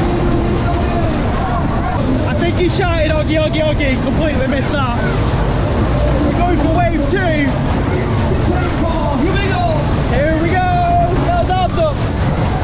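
A Matterhorn-type fairground ride in motion: a steady, loud rush of wind and rumble over the microphone from the swinging car, with riders' voices calling out and whooping over it in several bursts.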